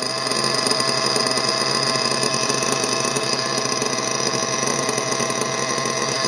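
LRP nitro engine of an RC buggy idling steadily through its tuned pipe, on its first run-in tank with a new carburettor on factory settings.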